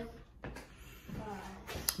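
A single sharp click near the end, over quiet room tone and a faint low voice.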